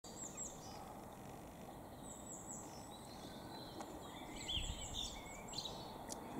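Steady outdoor background noise with a small songbird singing: three short phrases of high, arching chirps.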